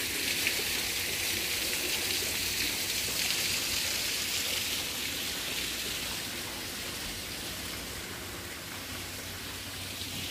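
Steady hiss of falling water, a little louder in the first half.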